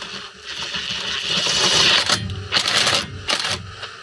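Cordless driver with a 10 mm hex bit driving a self-tapping screw through a solar panel mounting bracket and the clip underneath: the motor whirs steadily for about a second and a half, then runs in two short bursts.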